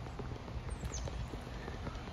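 Footsteps walking on a paved street, with a low rumble on the microphone.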